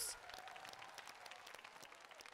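Faint applause from a studio audience, a steady patter of many hands clapping as a stage performance closes.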